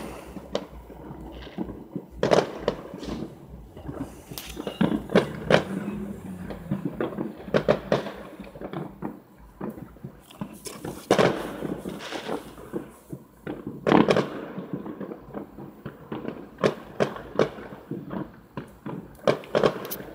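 Fireworks and firecrackers going off all around, heard from inside a car: a long, irregular run of pops and bangs, with a few louder bangs among them, the strongest about eleven and fourteen seconds in.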